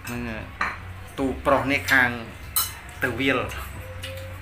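A metal spoon clinking against a plate during eating, with a few sharp clicks. Between them a person's wordless voice sounds come, their pitch sliding up and down, loudest in the middle.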